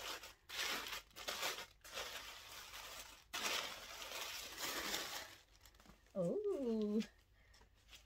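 Tissue paper rustling and crinkling in several bursts as it is pulled off and away from a fabric dust bag. About six seconds in, a short, excited, wordless vocal sound from the woman, lasting about a second.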